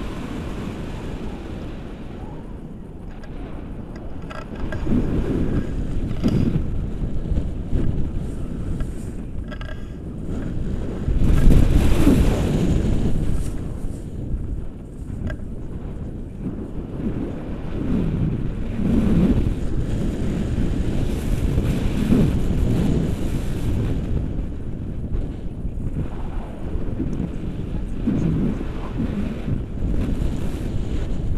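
Wind of a paraglider's flight rushing over the camera's microphone, swelling and falling in uneven gusts, the loudest surge about eleven seconds in.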